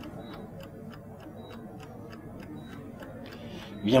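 Mechanical two-faced chess clock ticking steadily, about four ticks a second, faint under a low room background.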